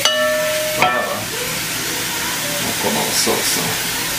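Beef cubes and onions sizzling in a hot pot, a steady hiss. There is a short tone and a knock in the first second.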